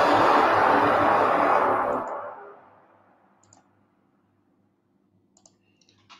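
A loud rushing swoosh from the intro's logo-reveal sound effect, fading out over about two and a half seconds, followed by near silence with two faint clicks.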